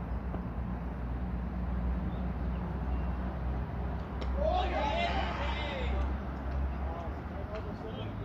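Outdoor cricket-field ambience: a steady low rumble throughout, and about four seconds in a player on the field shouts a call lasting about a second and a half as the ball is played.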